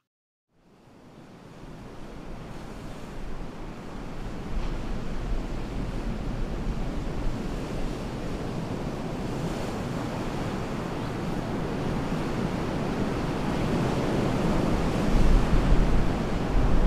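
Ocean surf breaking against rocks, with wind buffeting the microphone. The sound fades in from silence about half a second in and grows steadily louder, strongest near the end.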